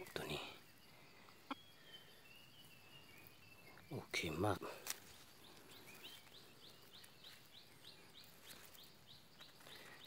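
Faint wild bird calls in the background: a high falling whistle early on, then a quick run of short high chirps, about three a second, through the second half.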